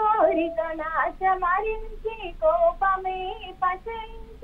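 A young woman singing a Telugu devotional song solo in a classical style, with held, gliding notes.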